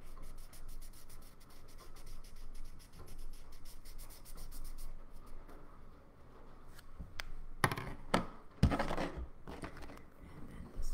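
Felt-tip marker scribbling on paper as the mane is coloured in, in quick, even back-and-forth strokes for the first half, then fainter. A few louder knocks and rubs come about eight to nine seconds in.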